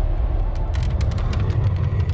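Logo sting sound design: a deep, steady rumble with a rapid scatter of sharp clicks and ticks over it.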